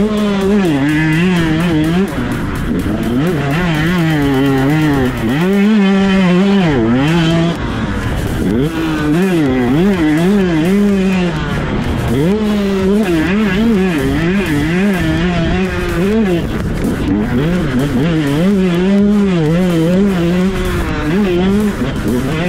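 KTM SX 125 single-cylinder two-stroke engine revving hard under full throttle, its pitch climbing and dropping every second or so as the rider opens and shuts the throttle and shifts gears.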